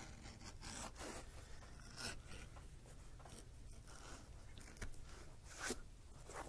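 Hand leather edger shaving a thin strip off the edge of a leather knife sheath to round it: faint, irregular short scraping strokes.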